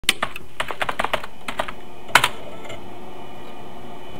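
Computer keyboard typing: a quick run of about a dozen key clicks over the first two seconds, ending with a louder keystroke just after two seconds, then a steady background hum.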